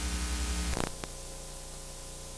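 Tape hiss and electrical hum from a blank stretch of old videotape after the recording cuts out. A faint click comes about a second in, after which the hiss settles a little quieter and steady.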